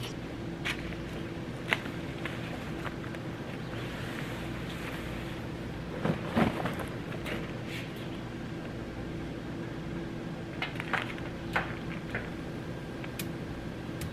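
Scattered knocks and rattles from a Blackstone propane griddle's cover and hood being handled, busiest about six seconds in and again near the end, over a steady low hum.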